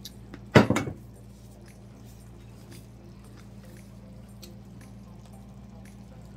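A single short, loud clunk about half a second in, like a cupboard door or kitchen dish being knocked, then a faint steady hum with scattered small ticks.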